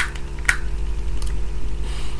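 Hard plastic parts of a Transformers action figure clicking as it is handled: a sharp click at the start and another about half a second later, then a couple of faint ticks, over a steady low electrical hum.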